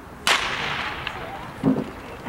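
Starter's pistol fired once, about a quarter-second in, to start a 100 m sprint race. It gives a sharp crack that echoes briefly.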